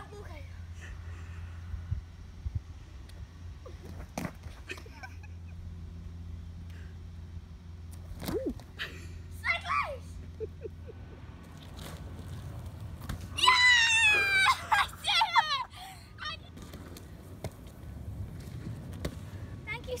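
A child's high-pitched voice calling out several times, with gliding pitch, about two thirds of the way through, over a steady low hum and a few scattered knocks.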